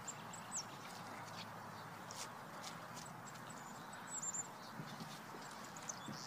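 Faint outdoor background noise, with scattered short high chirps and a few light knocks or steps.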